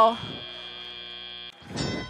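Robotics competition field's electronic buzzer tone, a steady buzz that cuts off suddenly about a second and a half in. A brighter field signal starts just after it, marking the end of the autonomous period and the start of driver control.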